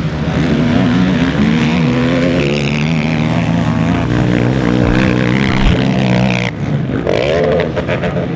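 Racing quad (ATV) engine revving hard, its pitch climbing and dropping with the throttle as it powers around the dirt track. The sound breaks briefly about six and a half seconds in, then another rising-and-falling rev follows near the end.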